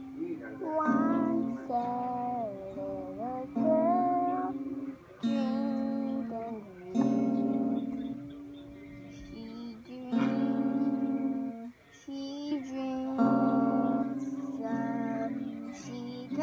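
Acoustic guitar strummed in chords, each group of strums starting sharply and ringing, with short pauses between them.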